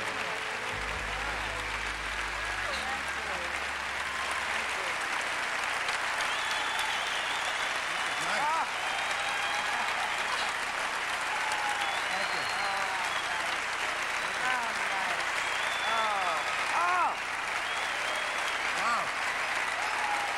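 A large theatre audience applauding and cheering at length, with shouts and whoops rising over the clapping.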